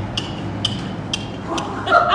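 A horse trotting on soft arena footing, with a light click about twice a second in time with its stride.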